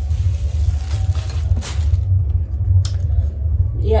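Plastic wrapping crinkling and a plastic blender jug being handled, with a couple of light clicks in the second half, over a steady low rumble.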